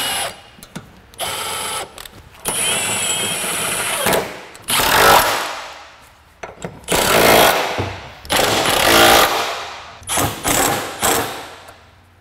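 Cordless power tool running subframe-mount bolts down in about six short runs, each one to one and a half seconds long with a motor whine, separated by brief pauses.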